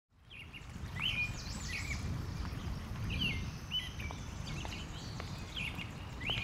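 Outdoor park ambience fading in: birds chirping in short repeated calls over a steady low rumble, with a few faint ticks.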